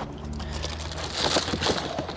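Paper carrier bag rustling and plastic DVD cases clicking against each other as a gloved hand rummages through the bag. The rustle is loudest just past a second in, over a steady low hum.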